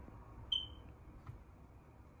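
A single short, high-pitched beep about half a second in, over faint room tone, followed by a faint click.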